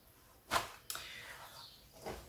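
A short swish followed a moment later by a light tap: shopping items being handled and set down.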